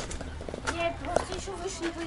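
Indistinct chatter of people's voices, with no clear words.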